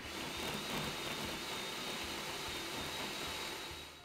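Countertop food processor running, its blade pureeing raisins and water. A steady motor hum with a faint high whine, starting suddenly and dying away as it is switched off near the end.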